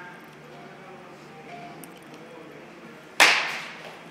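A baseball bat striking a pitched ball once, a sharp crack with a short ringing decay, a little after three seconds in.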